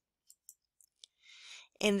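A pause in a lecturer's narration: a few faint clicks, then a short breath drawn in just before speech resumes near the end.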